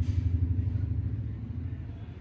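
Low rumbling rub of a masseur's hands working over and around a man's ears, pulsing quickly and unevenly, with a brief hiss right at the start; it eases off over the last half second or so.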